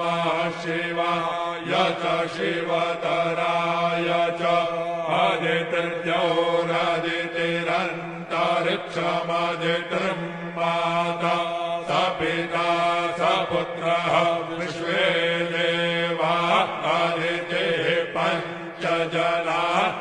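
Sanskrit Vedic mantras chanted in a continuous, steady recitation on a held reciting tone.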